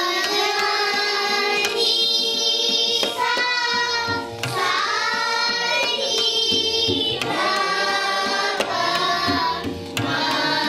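A group of children singing an Indian classical song together to tabla accompaniment, over a steady held drone note. The voices pause briefly about four seconds in and again near the end while the tabla keeps going.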